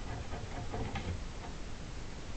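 Faint, irregular ticks of a pen writing on paper, over low room noise.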